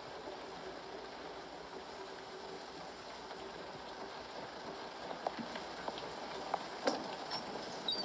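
Steady low-level background noise from a film soundtrack played through a speaker, with a few light knocks in the last three seconds.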